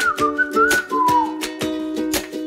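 Background music: a whistled melody that slides in pitch, over plucked ukulele-like chords and a steady percussive beat.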